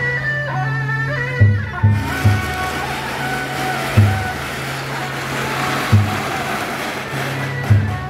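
Traditional Taiwanese temple-procession music: a reedy melody over deep drum beats that come about every two seconds. From about two seconds in, a hissing wash of noise covers much of the melody while a flag truck passes close.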